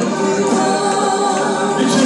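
Church congregation singing together, many voices holding long notes in a gospel song.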